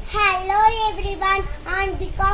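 A young girl singing an English rhyme unaccompanied, holding long notes.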